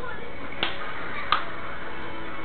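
Two sharp smacking clicks from a mouth sucking on a bottle, about three-quarters of a second apart.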